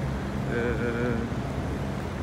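Steady low outdoor rumble of an open courtyard, with a single drawn-out voiced sound, like a spoken hesitation, held for under a second near the middle.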